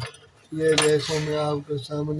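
Plastic scraping and clicking as the frosted diffuser dome of an LED bulb is twisted and worked loose from its base, with a man talking over it.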